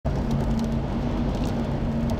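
Car driving at speed, heard from inside the cabin: steady engine hum and road rumble, with a few faint ticks over it.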